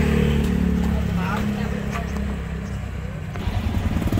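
Small motorcycle engine of a Philippine tricycle (motorcycle with sidecar) running close by, a steady hum. Near the end the engine picks up into a louder, quicker, even pulsing beat as the tricycle gets under way.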